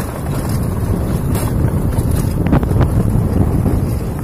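Wind rushing over the microphone of a moving motorcycle, a steady low rumble with the bike's engine running underneath.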